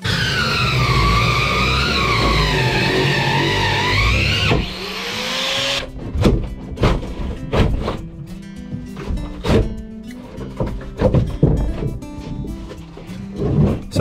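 An angle grinder fitted with a multi-cutter disc cuts through a wooden boat stringer, its whine rising and falling in pitch under load, and stops about four seconds in. After that comes a run of irregular knocks and thuds as the stringer wood is pried and broken out with a crowbar.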